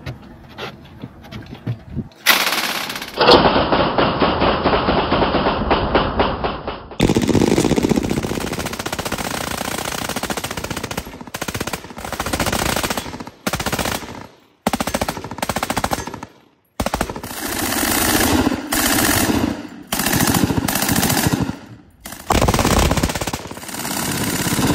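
MG42 machine guns firing long bursts of automatic fire, starting about two seconds in, one burst after another with short pauses between them.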